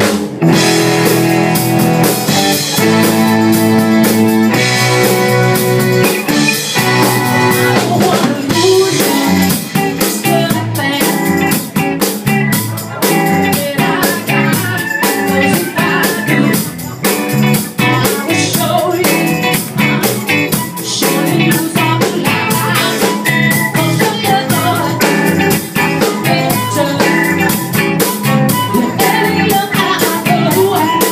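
Live soul band (electric guitars, bass, keyboard and drums) playing an R&B number, coming in all at once at the very start and staying loud with a steady drum beat.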